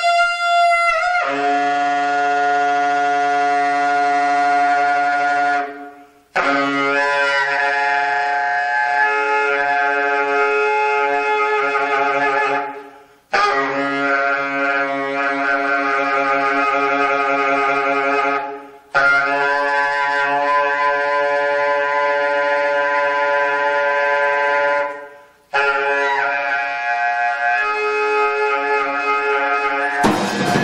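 Alto saxophone playing long held notes in five phrases of about six seconds each, each broken off by a short pause for breath.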